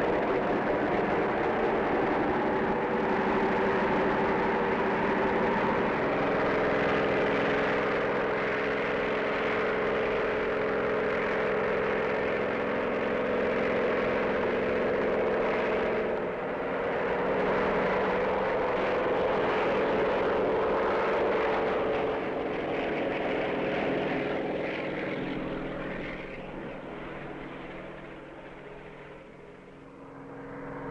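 Helicopter engine and rotors running with a steady drone, dipping briefly about halfway through and fading away over the last few seconds.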